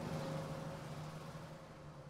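A bus driving away: a low engine hum and road noise that fade as it recedes.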